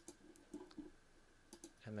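A few faint computer mouse clicks over quiet room tone: one at the start and two close together about one and a half seconds in.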